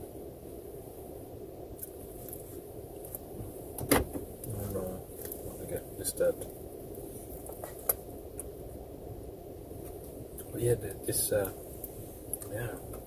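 Cutlery clicking now and then while eating, over a steady low hum inside a car; one sharp click about four seconds in is the loudest.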